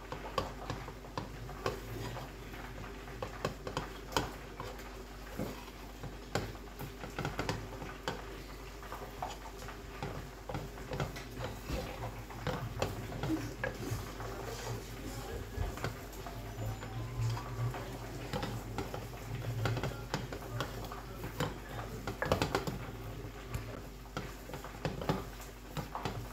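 A wooden spatula stirring and scraping food in a small enamel saucepan on a hob, with many light, irregular knocks against the pot, over a faint steady hum.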